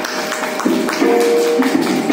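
Children singing a song together, accompanied by sharp tabla strokes and held melodic notes.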